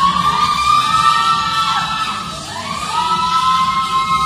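A group of onlookers cheering with long, high-pitched shrieks, two held "woo"s that rise and then fall away, over loud dance music.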